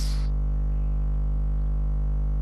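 Steady electrical buzz of mains hum with many overtones in the studio sound system, unchanging throughout. A short breathy 'shh' fades out at the very start.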